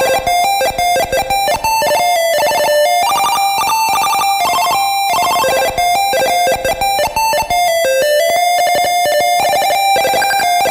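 1-bit PC-speaker chiptune, slowed down with reverb added: a square-wave melody of held beeping notes stepping up and down, over a fast stream of clicking pulses.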